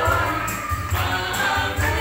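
Gospel song sung by several voices through a microphone and PA, over a backing track with a steady pulsing bass beat and light percussion.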